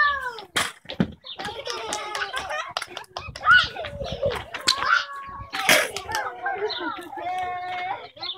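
Children's high voices calling out and chattering, broken by a few sharp knocks, the loudest a little after halfway through.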